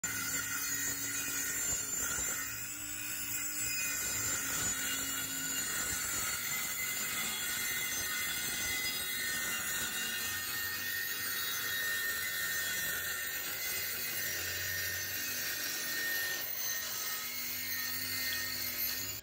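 DeWalt cordless circular saw running steadily, its blade cutting through a sheet of plywood with a continuous high-pitched whine.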